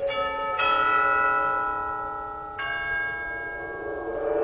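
Deep bell tones: a bell is struck three times, twice in quick succession at the start and once more past the middle, each note ringing on and slowly dying away.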